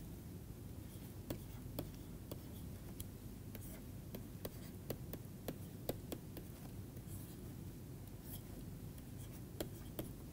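Stylus tapping and scratching on a writing tablet as an equation is written out: faint irregular clicks over a steady low hum.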